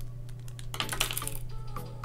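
Thin black plastic parts of a snap-together cube display stand rattling and clattering together and onto the table in a quick cluster about a second in, as the stand comes apart. Background music with a steady beat plays underneath.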